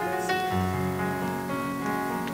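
Instrumental keyboard music: held chords over a bass line that comes in about half a second in, with no singing.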